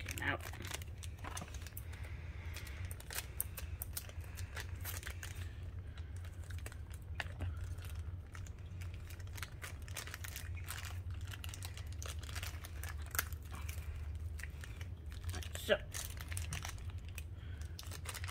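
Thin clear plastic bags crinkling and crackling in the hands as small Beyblade parts are unwrapped, an irregular run of small crackles with a few louder ones in the later part.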